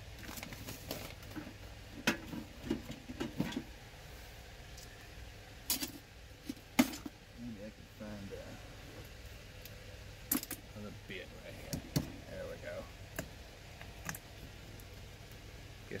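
Scattered clicks, knocks and light metallic jangling from plastic jugs and a pointed tool being handled on a bench while the seal of a new bottle is stabbed open.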